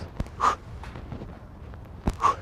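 A man's short, forceful breath out, about half a second in, from the effort of pulling up in an inverted row. A brief click comes just before it.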